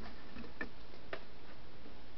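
Two faint clicks, about half a second apart, over a steady low background hum, as the tablet used as a light box is handled and switched on.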